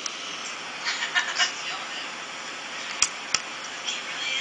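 Tinny audio of a zoo panda video played through a smartphone's small speaker: faint voices and animal calls over a steady hiss, with two sharp clicks about three seconds in.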